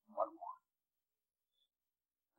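A man's voice speaking one short word at the start, then dead silence.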